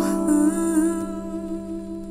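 The end of an R&B song: a held chord with a hummed or sung note wavering in pitch over it, fading out.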